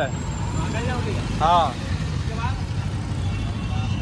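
Busy street traffic: a steady low rumble of passing engines and tyres, with a few short calls from voices nearby, the clearest about a second and a half in.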